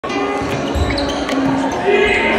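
Music with a held, shifting melody plays over a volleyball rally in a gym, with a low thud of the ball being played a little under a second in and again at the end.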